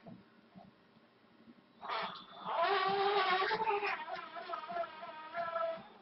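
Hand-held electric drill running for about four seconds, starting about two seconds in, its motor whine wavering slightly in pitch as it bores through plastic.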